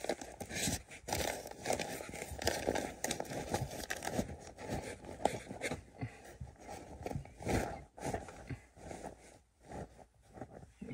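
Fiberglass insulation batts rustling and crinkling in irregular bursts as they are pushed and stuffed back up between floor joists by hand.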